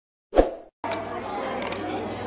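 A single short thump about a third of a second in, then the background of a large hall: a steady low electrical hum with faint murmur and a couple of faint clicks, before any music starts.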